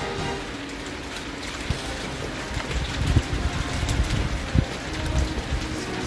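Outdoor wind rumbling on the microphone, with faint background music underneath. Three soft knocks come at intervals.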